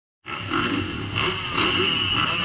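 Several motocross bikes running at the start gate, their engines idling and being revved, the level swelling and dipping several times.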